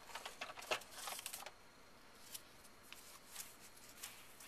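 Small clicks and scraping of plastic parts as the brush roll of a Rainbow E-Series power nozzle is pried out of its housing with a screwdriver, busiest in the first second and a half, then only a few faint clicks.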